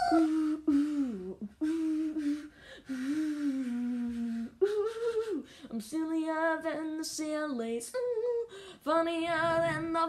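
A voice humming a wordless tune unaccompanied, in held notes that slide downward at the ends of phrases. From about six seconds in, the notes waver with vibrato.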